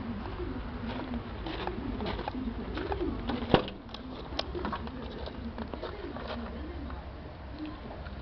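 Pigeons cooing, repeated wavering low calls, with a sharp click about three and a half seconds in as the van's door is opened.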